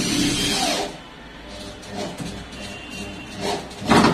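Handheld electric drill running with its bit in a wooden wardrobe panel, stopping about a second in. Short bursts of the drill follow, with a louder brief one near the end.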